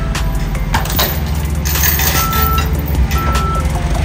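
Steady low rumble of engines running at the unloading, with a few sharp knocks early on from the pallet work, and two short beeps about a second apart in the second half, typical of a forklift's back-up alarm.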